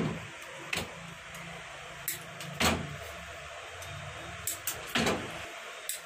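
Lead battery plates being handled and set down: a few sharp clicks and clacks, some in quick succession near the end, over a steady low electrical hum.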